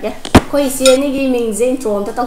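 A serving spoon clinks once, sharply, against a glass bowl of broth as it is ladled, about a third of a second in. A woman's voice then carries on, drawn out, through most of the rest.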